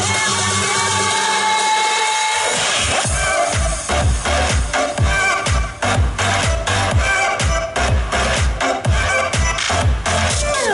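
Pop song with an electronic dance backing played through a PA. A long held sung note and sustained chords run with the bass briefly dropped out. About three seconds in, a steady kick-drum beat of about two strokes a second comes in for an instrumental passage.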